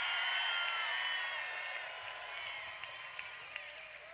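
Crowd cheering and applauding, with many voices whooping over the clapping; it is loudest at the start and dies down over the few seconds.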